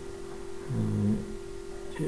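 A steady single-pitched hum, with a man's brief drawn-out 'ehh' of hesitation a little under a second in.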